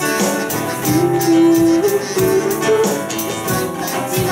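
Acoustic guitar strummed in a steady rhythm, playing a song live.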